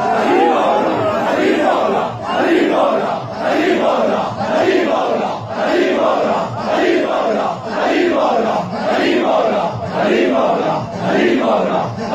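A large crowd of men chanting a noha refrain together in a steady, loud rhythm, the chant pulsing about three times every two seconds. The chant keeps time with matam, ritual mourning chest-beating.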